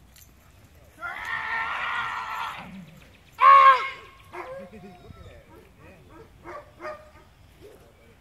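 People shouting during protection-dog bite work: a long, loud yell of about a second and a half, then a short, sharp shout about a second later, followed by fainter short calls.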